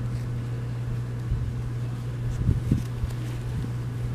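Steady low hum with a few soft handling knocks and rustles about two and a half to three seconds in.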